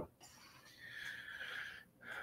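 A faint, breathy intake of breath by a man, lasting about a second.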